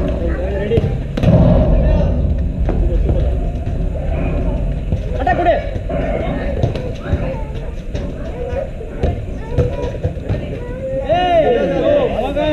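Players' shouts and calls during a five-a-side football match, over steady low rumble. Scattered short thuds come from the ball being kicked, with a louder shout near the end.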